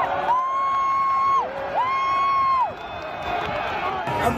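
A person in a crowd yelling two long, high held shouts, each ending with a drop in pitch, over the noise of the surrounding crowd.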